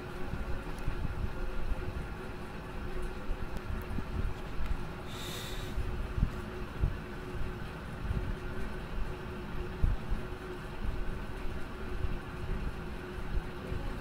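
Steady low background rumble with a faint steady hum, and a short hiss about five seconds in.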